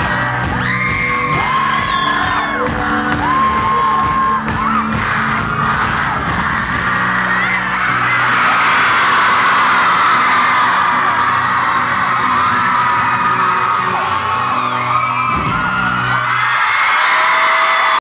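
Live band with acoustic guitar and vocals playing, with a crowd of fans screaming and cheering over it. The crowd noise swells about eight seconds in, and the band's low notes stop near the end while the cheering goes on.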